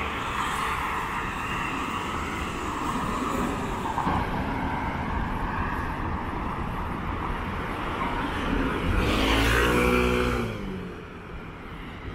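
Street traffic: cars and scooters running on a city road. A louder motor vehicle passes close about nine seconds in, its engine pitch falling slightly as it goes by, and the traffic is quieter afterwards.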